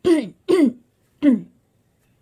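Short bursts of laughter: three brief breathy laughs, each falling in pitch, at the start, about half a second in and just over a second in.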